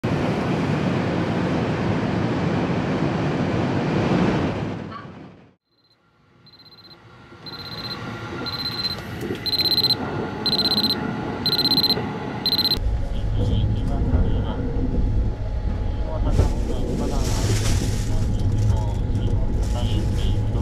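Steady running noise inside a train carriage, which fades out. After a moment of silence, a digital alarm clock gives quick, high-pitched beeps that grow louder over about six seconds. Then a steady low rumble sets in inside a sleeper-train compartment.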